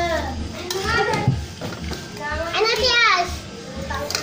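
Mostly speech: children talking and calling out, with a long high-pitched child's voice a little past the middle.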